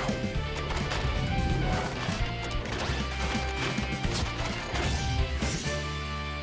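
Cartoon robot-transformation sound effects over background music: a rising swoosh at the start, then a rapid string of mechanical clanks and impacts as a robot dinosaur folds into a bus.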